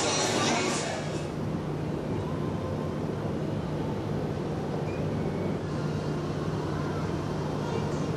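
Steady low hum from aboard a cruise ship, with faint voices in the background; a louder hiss fades out about a second in.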